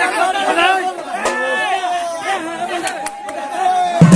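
A crowd of men's voices talking and calling out over one another, with no drumming.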